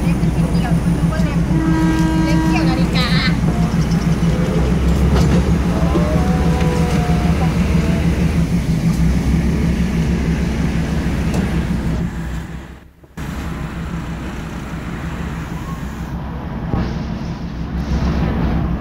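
A vehicle engine running steadily close by, a low even hum, with a short higher tone about two seconds in and voices heard now and then.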